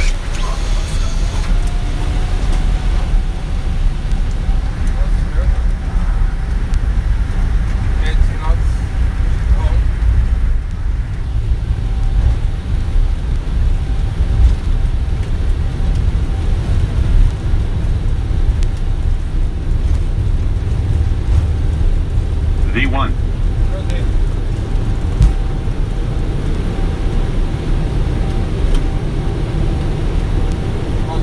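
Boeing 777F take-off roll heard from the flight deck: twin GE90 engines at take-off thrust and the wheels on the runway give a heavy, steady low rumble, with a faint steady whine over it.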